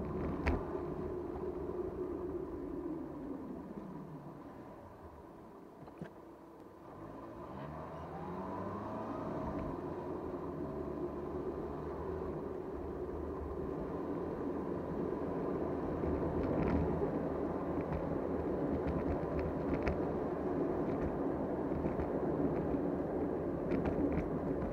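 Car engine and tyre noise heard from inside the cabin. The engine note falls and fades over the first few seconds, is briefly quiet, then rises again as the car speeds up and settles into steady road noise.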